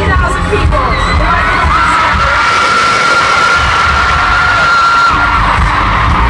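Arena concert crowd cheering and screaming at a live pop show. The band's low beat drops away for a few seconds midway, while one long high note is held over the cheering for about three and a half seconds.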